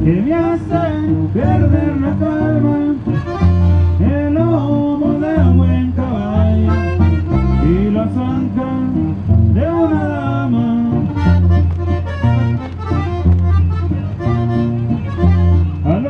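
Live norteño music from a small band playing through a PA speaker: an accordion carries the melody over steady, rhythmic bass notes.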